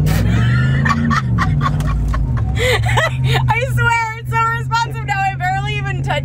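Ford pickup truck's engine heard from inside the cab under acceleration, its pitch rising over the first second, dipping and then holding steady. A woman laughs over it from about halfway in.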